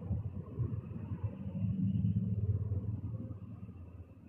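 A low rumble over a phone-quality line, swelling about two seconds in and fading away near the end.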